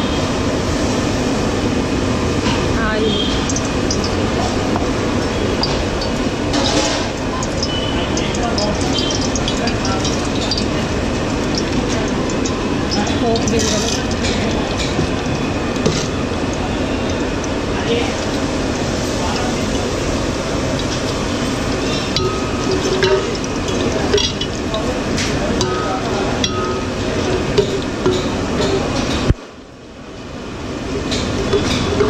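Steady rushing noise of a gas stove and hot oil in an aluminium pot, with scattered metal clinks as a steel ladle stirs lentils and seeds in the pot.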